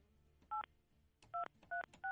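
Touch-tone telephone keypad tones as a phone number is dialed: three short two-note beeps at uneven spacing, about half a second in, near the middle and again shortly after.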